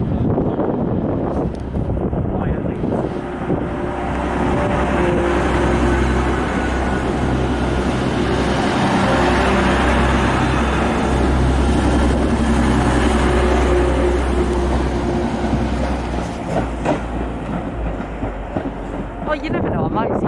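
Diesel passenger train passing close along a station platform: a steady engine drone mixed with wheel-on-rail noise, building to its loudest midway and then easing off.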